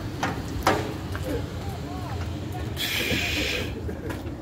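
A short hissing noise lasting about a second, starting near three seconds in, over a constant low street rumble, with a couple of sharp clicks early on and faint voices.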